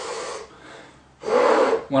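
A man's audible breathing through the mouth, demonstrating a brass player's breath: a short breath at the start, then a louder, rushing breath of under a second about halfway through.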